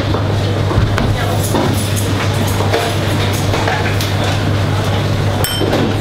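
Restaurant kitchen ambience: a steady low hum with scattered clinks of dishes and utensils, and one bright ringing clink shortly before the end.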